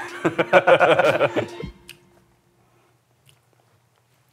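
Laughter: a quick run of short bursts lasting about a second and a half, then it stops and there is near silence with a faint tick.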